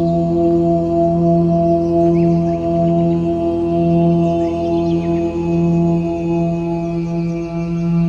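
432 Hz Om meditation music: a deep, held Om chant over a steady drone with ringing overtones, its lowest tone swelling gently every second or two. Faint short high chirps sound above it.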